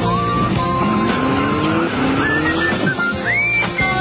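Theme music from a TV show opening, with a sound effect in the middle that rises steadily in pitch for about two seconds over a noisy rush.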